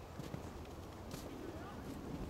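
Faint, distant voices over a low outdoor rumble, with a few soft clicks or knocks.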